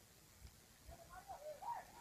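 Near silence, with a faint distant voice in the second half.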